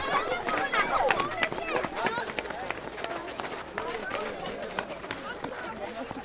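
A crowd of children's voices shouting and chattering over one another, busiest in the first two seconds, with many short scuffs and steps of feet among them.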